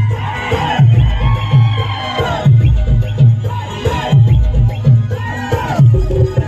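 Loud music with a heavy bass beat, about two beats a second, with a crowd shouting and cheering over it.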